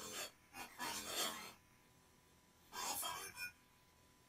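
A faint, breathy voice says short "bye-bye" syllables in three brief bursts, answering a spoken prompt and repeated back by the computer's echo audio feedback.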